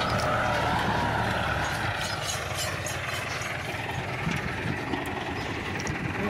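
Massey Ferguson 375 tractor's diesel engine running steadily under load while it pulls a 16-disc offset disc harrow. The low engine drone drops in level about two seconds in.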